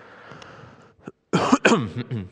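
A man coughing twice in quick succession, about a second and a half in.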